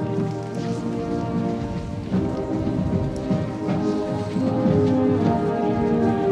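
Marching band playing: wind instruments hold sustained chords that change every couple of seconds, over a dense low rumble from the percussion.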